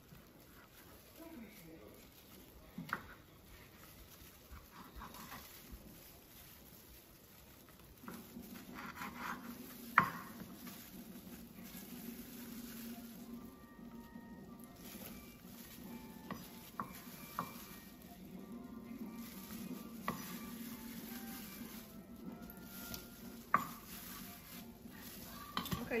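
Kitchen handling sounds of kielbasa sausage being cut on a wooden cutting board and the pieces moved into a steaming stock pot: scattered sharp knocks and clatters, the loudest about ten seconds in. A steady low hum comes in about eight seconds in and runs under the rest.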